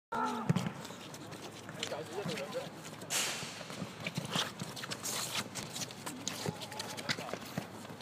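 Scattered knocks of footsteps and a football being kicked on artificial turf, with brief voices of players in the background. A short burst of rustling comes about three seconds in.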